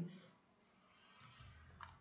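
Near silence: the end of a spoken word trails off at the start, and a faint brief click comes just before speech resumes.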